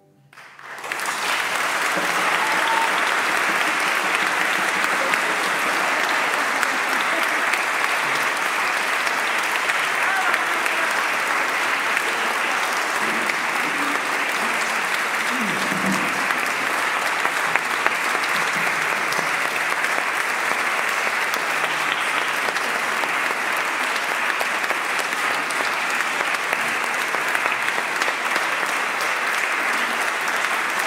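Audience applause after the music ends. It breaks out about a second in and goes on as steady, dense clapping.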